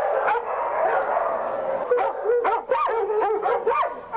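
Dogs in shelter kennels barking and yelping, with many short barks at different pitches overlapping one another.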